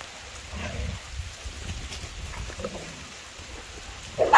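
Dogs moving through leafy undergrowth, with two faint, brief dog vocalizations, about half a second and about two and a half seconds in, over a low steady rumble on the microphone.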